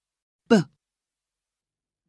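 Speech only: a single spoken "buh", the /b/ phonics sound, about half a second in, short with a falling pitch, and silence around it.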